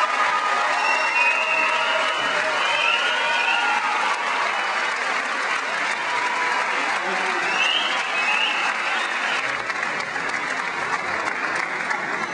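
Audience applause: steady, dense clapping from many people that slowly eases off.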